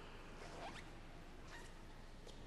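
Faint room sound of a seated congregation in wooden pews, with rustling and a few soft clicks. A short rising squeak comes about half a second in.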